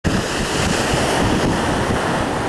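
Sea surf breaking on a rocky shore, a steady wash of noise, with wind buffeting the microphone in low gusty rumbles.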